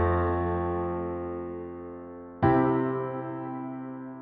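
Piano sound from a Nord Stage 2 EX stage keyboard: sustained chords with a left-hand bass note, from the verse's C, D minor, A minor, F progression. One chord rings and fades, and the next is struck about two and a half seconds in and fades in turn.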